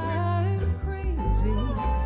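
Acoustic bluegrass band playing: strummed acoustic guitar and upright bass under a held melody line that bends slightly, with no words sung.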